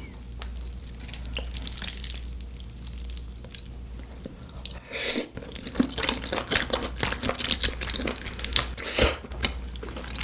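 Close-miked wet, sticky eating sounds: a stream of fine mouth clicks and smacks from chewing, with two louder bursts about five and nine seconds in, over a steady low hum.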